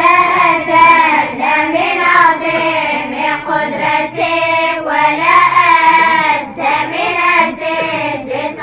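A group of children chanting together in unison, in long, wavering melodic lines with brief breaks between phrases.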